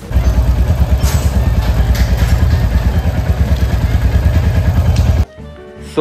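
Royal Enfield Hunter 350's single-cylinder engine idling up close, a steady rapid exhaust beat of roughly eight pulses a second that cuts off abruptly about five seconds in.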